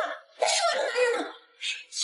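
A man's short, gruff spoken exclamation with a rough, cough-like edge, followed by a brief breathy sound near the end.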